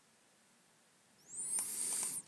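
Near silence, then about a second in a short high-pitched squeak whose pitch rises and then falls away.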